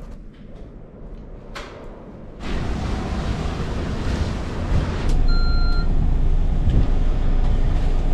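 Low, quiet room tone for the first couple of seconds. Then a sudden change to a steady low rumble of wind on the microphone and bus engine. About five seconds in there is a click and a short electronic beep from a bus ticket machine, over the running bus engine.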